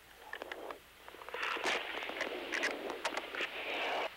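Crackling hiss with scattered clicks on the crew intercom audio channel, swelling in about a second in and then holding steady.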